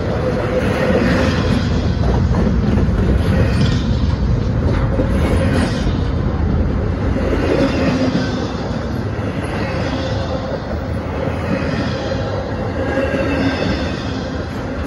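Intermodal freight train's well cars rolling past at close range: a steady rumble and clatter of steel wheels on rail, with a faint wheel squeal. It gets a little quieter after about eight seconds, as the container-loaded cars give way to empty well cars.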